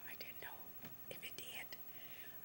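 A woman whispering softly, a few faint breathy, hissing syllables.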